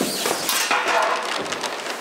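A small cymbal skidding across a taut sheet of fabric: the fabric rustles and swishes, the metal scrapes over it, and there is a sharp knock about half a second in.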